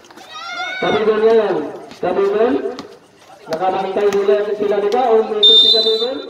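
A loud voice calling out in drawn-out phrases with short breaks. Near the end, a short, shrill referee's whistle blast sounds over it.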